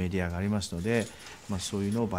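A man speaking, in a low voice, with no other clear sound.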